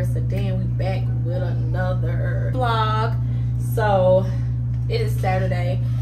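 A woman's voice over background music, with a steady low hum underneath.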